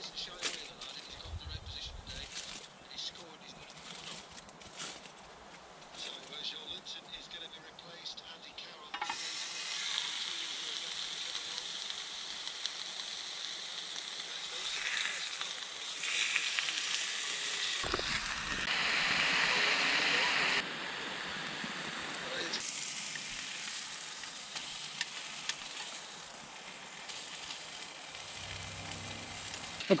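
Pork medallions sizzling in a hot frying pan on a small wood-fired Bushbox pocket stove. A few light clicks of handling come first, then the sizzle sets in about a third of the way through. It grows louder around the middle as the meat goes into the pan, then settles to a steady fry.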